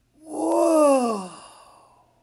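A man's voice making one long wordless call that slides steadily down in pitch and fades away, a spooky ghost-like voicing.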